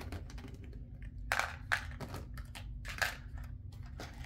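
Hands handling a doll's cardboard and plastic packaging: a series of short rustles and clicks, the loudest cluster about a second and a half in and another near three seconds.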